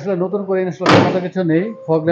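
A car bonnet slammed shut once, about a second in, with a short metallic ring, over men talking.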